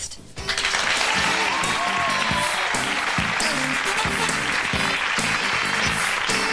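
Studio audience applauding over show music with a steady beat, starting about half a second in after a brief pause.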